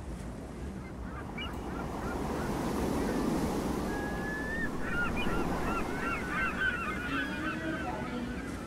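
Beach soundscape: a flock of gulls calling over the steady wash of surf. The calls begin about a second in and grow thicker in the second half.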